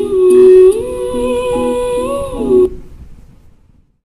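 The closing bars of a recorded Hindi film song: a voice humming a long, slowly gliding melody over softly repeating plucked chords. The music stops about two and a half seconds in and its echo fades to silence.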